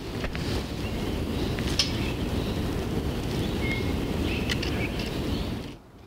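Wind buffeting the microphone: a steady low rumble, with a few faint clicks.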